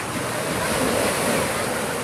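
Surf washing up a beach: a steady rush of breaking waves that swells louder through the middle as a wave runs in.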